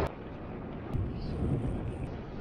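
Wind rumbling on an action camera's microphone while riding a road bike, mixed with the rolling noise of the ride, with a faint tick just under a second in.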